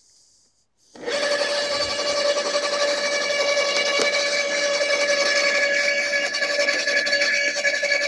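Makita UD2500 electric garden shredder starting about a second in and then running steadily, a loud even motor whine with several constant tones.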